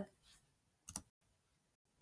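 Near silence, broken by one brief click about a second in.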